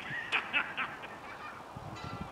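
Birds calling: a quick run of short, pitched calls in the first second, then fainter calls.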